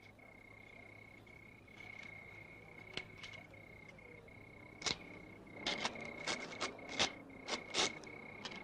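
Faint night ambience of crickets chirping in a steady high trill, broken by a few sharp, irregular cracks or snaps that crowd together in the second half.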